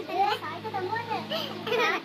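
A child's voice speaking in short, unclear bursts, over a steady low hum.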